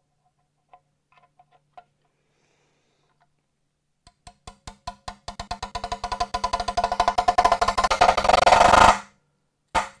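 Drum roll: taps start slowly, speed up and swell over about five seconds, then stop suddenly, followed by a single sharp hit near the end.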